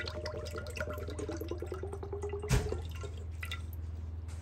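Coconut milk pouring from a can in a thin stream into a stainless steel pot, trickling and dripping. A single loud knock comes about two and a half seconds in, and the pouring dies away after it.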